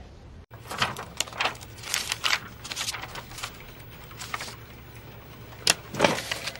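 Small clicks, taps and rustles of papers and objects being handled on an office desk, with a sharper knock near the end, over a faint steady room hum.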